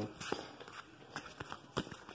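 Handling noise: a few soft, scattered taps and clicks, the sharpest two close together about three-quarters of the way through.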